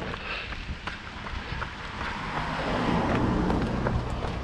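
Wind buffeting a body-worn action camera's microphone while running, with a car on the road growing louder in the second half as it approaches and passes.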